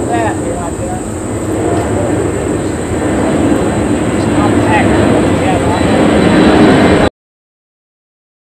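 Indistinct voices of several people talking over a loud, steady rumbling noise that slowly grows louder, then cuts off abruptly about seven seconds in.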